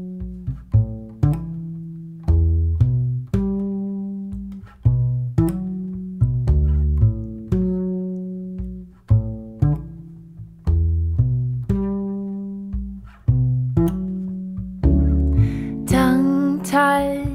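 Solo acoustic bass guitar playing a slow plucked bass line as a song's introduction: single deep notes, each struck and left to ring and fade, about one or two a second. A woman's singing voice comes in at the very end.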